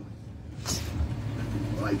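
A steady low hum of video audio playing through a tablet's speaker, with a faint click about two-thirds of a second in, then a voice beginning near the end.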